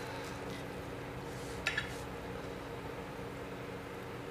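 Knives and forks working on plates as slices of meatloaf are cut, with one short, sharp clink a little under two seconds in, over a steady low hum.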